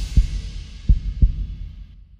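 The tail of a TV show's closing theme, with a heartbeat sound effect. Two low double thumps, lub-dub, one at the start and another about a second in, play over the fading ring of the last chord.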